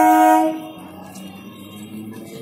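Electric suburban train's horn sounding a steady chord of several tones, cutting off about half a second in; a much quieter rumble of the train follows.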